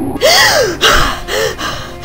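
A person gasping, about four short breathy gasps in quick succession, the first with a brief rise and fall in pitch.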